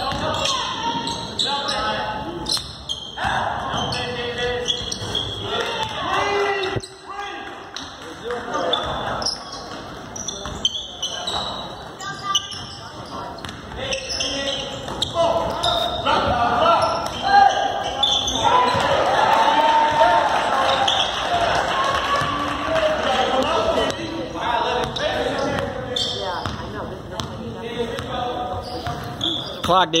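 Basketball game in a gym: a ball dribbled on the hardwood court amid players and spectators calling out, echoing in the large hall; the voices get louder about halfway through.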